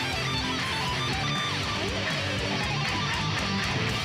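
Electric guitar playing a lead line of quick changing notes in a metal-style pentatonic lick, with no speech over it.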